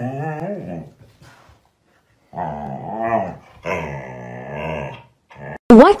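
Siberian husky "talking": wavering, drawn-out vocal grumbles, a short bout at the start and then, after a pause, a longer bout of about three seconds.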